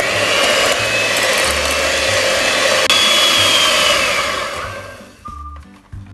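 Electric hand mixer running, its twin beaters churning butter and granulated sugar in a glass bowl with a steady whir. It winds down and stops about five seconds in.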